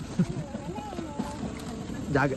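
Low background voices talking, with no one close to the microphone.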